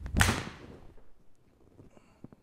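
Mizuno MP-20 HMB forged 4-iron striking a golf ball off a hitting mat in a well-struck shot: one sharp crack about a quarter second in, dying away within about a second.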